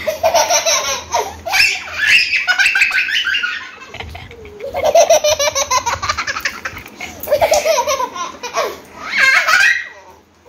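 A toddler laughing loudly in several bouts, with short breaks between them.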